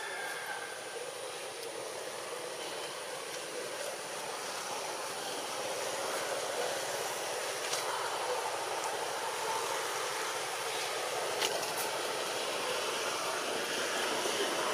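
Steady outdoor background hiss that slowly grows a little louder, with a few faint ticks.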